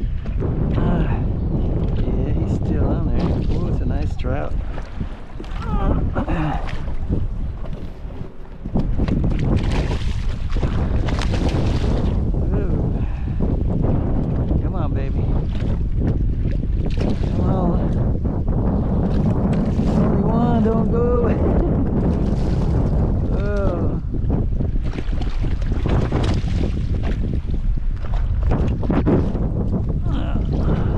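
Wind blowing across the microphone over choppy open water, a steady rush that eases for a few seconds about five seconds in.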